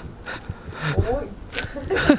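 A man's short, quiet vocal reaction sounds and breaths after taking a sip of wine.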